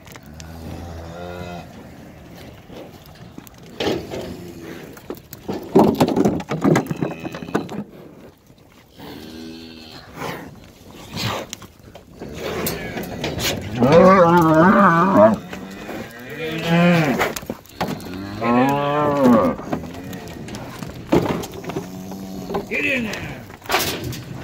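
Cattle mooing repeatedly: a series of long, pitched calls, growing louder and longer in the second half.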